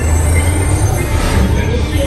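A roller-coaster train of lightcycle ride vehicles moving along its track through the station, a steady low rumble.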